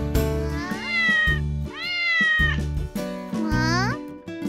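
A cat meowing three times over children's background music with a pulsing bass beat. The second meow is the longest, and the last one rises in pitch.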